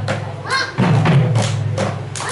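Manipuri pung, two-headed barrel drums, played together by several drummers in a pung cholom drum dance: a fast run of sharp strokes, with heavy low strokes starting just under a second in.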